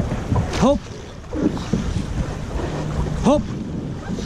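Llaut rowing crew at stroke: wind noise on the microphone over water and oar sounds, broken by two short shouted stroke calls, about half a second in and near the end.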